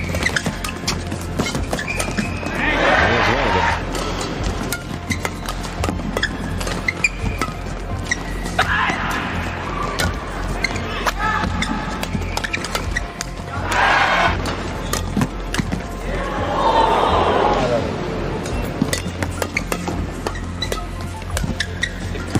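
Badminton rallies: rackets hitting the shuttlecock in quick sharp clicks and shoes squeaking on the court, with short bursts of arena crowd noise several times as points are won.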